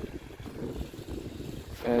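Wind buffeting the microphone outdoors, a gusting low rumble.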